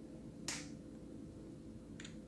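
A single short, faint click about half a second in, over a quiet pause with a faint steady hum.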